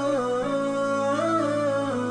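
Wordless hummed vocal melody, the tune stepping slowly up and down over a steady low hummed drone that shifts pitch about half a second in: a cappella intro music.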